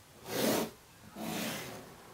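Two rubbing strokes of a pencil and clear plastic ruler on drawing paper, a short one under a second in and a longer one just after.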